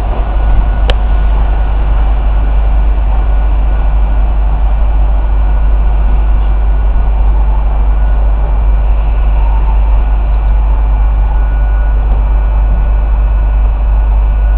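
Loud, steady railway-station ambience: a heavy low rumble under a noisy hiss, with faint steady high tones and a single click about a second in.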